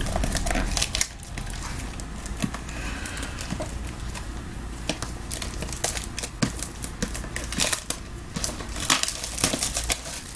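Trading-card box and pack wrapping torn open and crinkled by hand: irregular rustling and crackling with sharp clicks.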